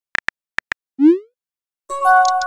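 Simulated phone keyboard clicks as a text message is typed, then a short rising pop about a second in as the message is sent. A bell-like chime with several tones begins right at the end.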